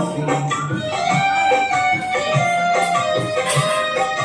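Karaoke backing track of a golden-era Hindi film song playing an instrumental passage, with no singing over it.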